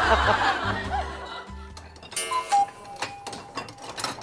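A woman's loud laughter fading out in the first second over light background music, followed about two seconds in by a short tinkling music cue.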